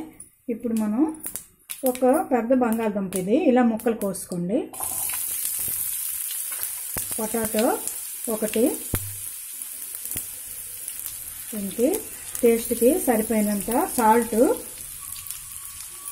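Raw potato cubes hit hot oil with a tempering of dal and mustard seeds, and a sudden steady sizzle of frying sets in about a third of the way in and carries on.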